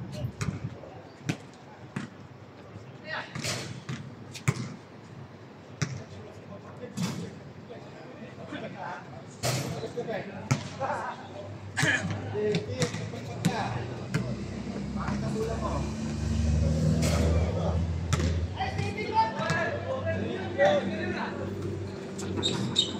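A basketball bouncing on an outdoor hard court, heard as scattered sharp knocks, amid background chatter from players and spectators. A low rumble swells about two-thirds of the way through.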